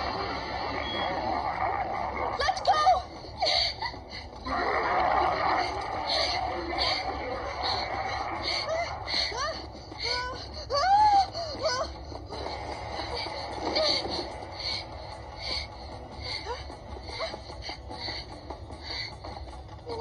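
Anime soundtrack played through a tablet's speaker: a laugh at the start, then a girl's breathless, straining cries over dramatic music with a steady beat.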